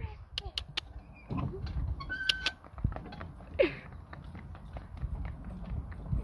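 Hooves of two Shetland ponies walking in harness on a paved path, with a few sharp clip-clops early on, over a low steady rumble.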